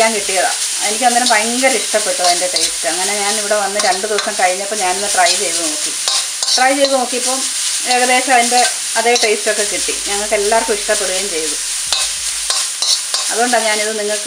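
A metal spoon stirring and scraping chopped beetroot frying in a wide metal pan, in repeated strokes, many with a pitched scraping squeal, over a steady sizzle. The strokes pause briefly near the end, then start again.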